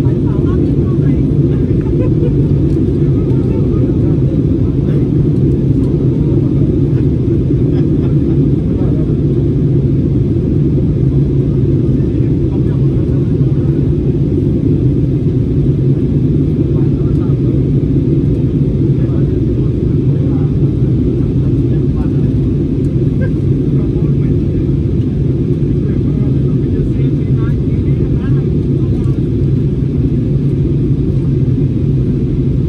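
Airliner cabin noise in flight: a steady, loud drone of jet engines and airflow heard from inside the passenger cabin, with no change in level.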